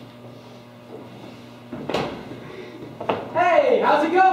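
Quiet room tone, a single knock about two seconds in, then a voice starts talking about three seconds in.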